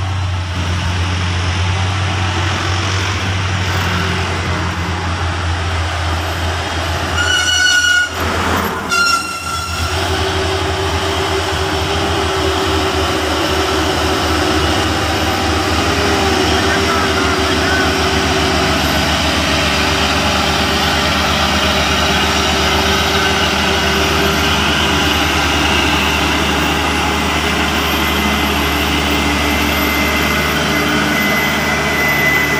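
Heavy diesel trucks running in slow traffic, a steady low engine drone. About seven seconds in, a vehicle horn sounds twice in quick succession, with a loud burst of noise between the two blasts.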